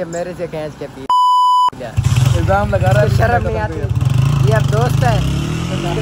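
A censor bleep: one loud, steady, high beep about half a second long, about a second in, replacing the speech under it.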